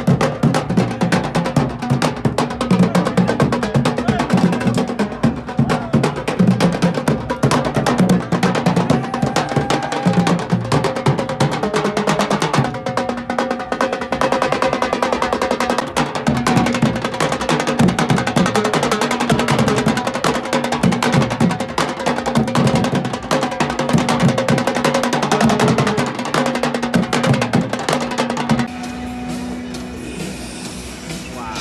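Street drum group playing live: large bass drums and marching snare drums beating a fast, steady rhythm with rolls. About two seconds before the end the drumming stops and the sound drops to quieter background.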